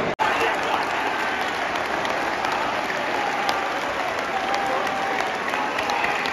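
Large football stadium crowd cheering and applauding a home goal: a dense, steady wall of noise with single shouts and handclaps standing out. The sound cuts out for an instant just after the start.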